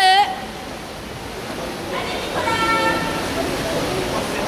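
Echoing indoor swimming-pool din: water churned by swimmers under spectators' voices. A short, wavering high-pitched shout comes right at the start, and a steady one-note sound lasting about a second comes about two and a half seconds in.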